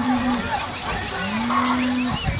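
Cattle mooing: one long moo ends about half a second in and another starts about a second in, each rising and then holding steady. Short high bird chirps run behind them.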